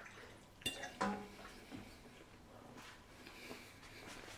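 Quiet mealtime sounds: knife and fork on a plate while meat is being cut, with one sharp click a little over half a second in and a short hum of voice around a second in.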